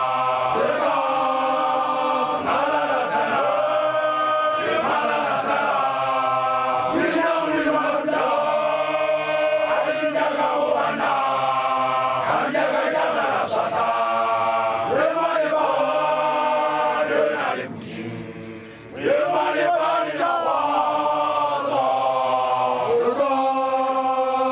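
A group of young Basotho initiates (makoloane) chanting a song together in voices only. The chant breaks off briefly about three-quarters of the way through, then picks up again.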